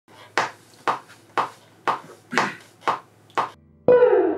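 Seven sharp clicks, evenly spaced about two a second like a count-in to the tempo, then a note on a hollow-body Washburn electric guitar starts ringing just before the end.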